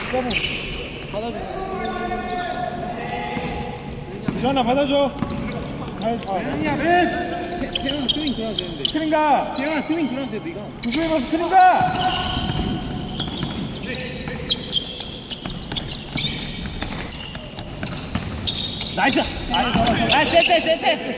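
A basketball being dribbled on a hardwood gym floor during a game, with players calling out to each other and the sound carrying around a large hall.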